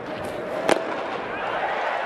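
A fastball smacking into the catcher's mitt with one sharp pop for a called third strike, followed by the ballpark crowd cheering louder.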